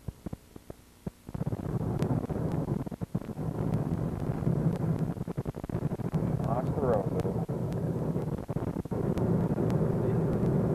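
Steady road and wind noise of a moving car heard from inside, cutting in abruptly about a second in after a few faint clicks.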